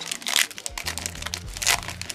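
Foil wrapper of a Pokémon booster pack crinkling as it is handled in the hands, a quick run of crackles.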